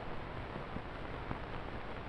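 Steady hiss with a low hum from an old optical film soundtrack, with no other sound on it.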